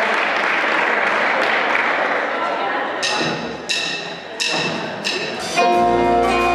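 Hall noise from the audience, then four sharp wooden clicks evenly spaced, about three seconds in: drumsticks counting in the band. The band comes in playing right after the fourth click, near the end.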